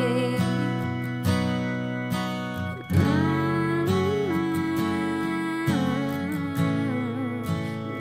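Music: an acoustic guitar backing track of a slow country ballad, playing between sung lines, with a new chord struck about three seconds in.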